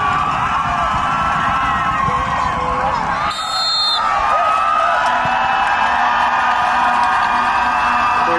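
Stadium crowd cheering, with many voices yelling and whooping over one another; a short high tone sounds about three seconds in.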